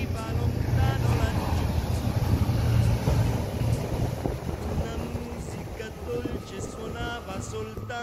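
Large motor yacht passing close at high speed: a deep engine rumble that is loudest a second or so in and eases off toward the end, with wind buffeting the microphone.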